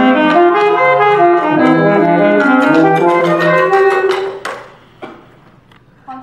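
A small school wind ensemble of brass horn and saxophones playing sustained chords together, the notes changing every half second or so; the playing stops about four and a half seconds in, leaving a few light knocks.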